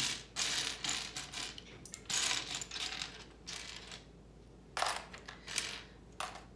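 Loose plastic LEGO bricks clattering as hands sort through a pile on a tray, in several short bursts with brief pauses between them.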